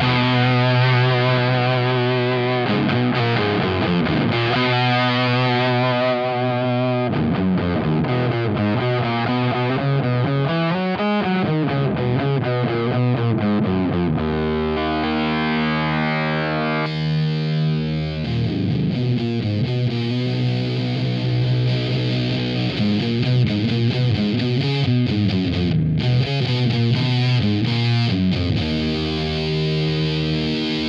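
Electric guitar played through a Boss FZ-2 Hyper Fuzz pedal: sustained, heavily fuzzed chords with a slow whooshing sweep rising and falling through them. The tone shifts about halfway through as the pedal's knobs are turned.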